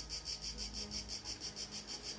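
Insects chirping steadily and faintly, a rapid, even pulse of high notes.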